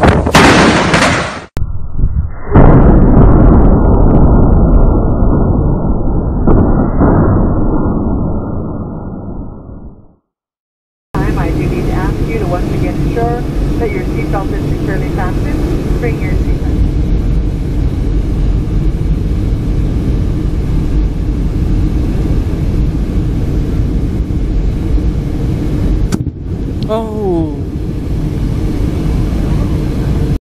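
Wind and rain noise, then a sudden loud thunderclap about two and a half seconds in that rumbles and dies away over about seven seconds. After a short silence comes the steady drone of a jet airliner's engines heard inside the passenger cabin, with voices.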